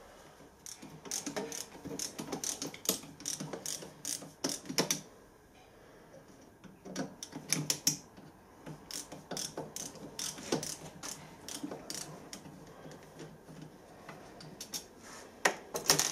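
Irregular small metallic clicks and scrapes of a screwdriver and fingers working on the brass case and pointer mechanism of a pressure gauge being taken apart, with a quieter pause partway through.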